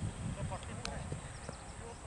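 Faint open-air background of distant players' voices across the cricket ground, with scattered light clicks and a brief high chirp a little before the middle.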